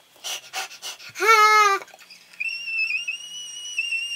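A person's breathy, wheezing vocal sounds, then a short high wavering squeal, followed by a thin, steady, high whistle-like tone.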